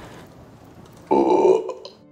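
A short, throaty vocal sound from a person, about a second in and lasting about half a second, after a quiet start.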